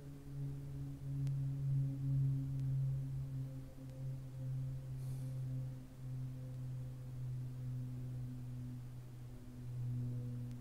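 A steady low hum made of a few held tones, its loudness slowly swelling and fading. A faint tick sounds about a second in and a brief soft hiss about halfway through.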